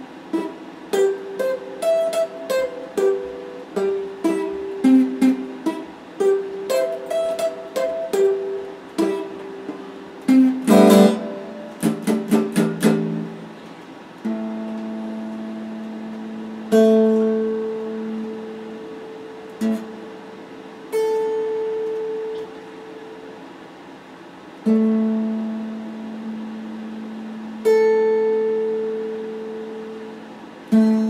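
Stratocaster-style electric guitar played solo. For about the first half it plays quick picked single-note lines with a fast flurry near the middle. After that it strikes single notes and pairs every few seconds and lets each ring out and fade.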